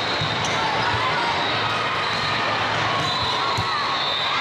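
Volleyball rally in a large, echoing tournament hall: a steady din of many voices from players and spectators, with a couple of sharp smacks of the ball being played, one about half a second in and one near the end.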